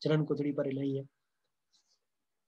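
A man speaking for about the first second, then it cuts to silence.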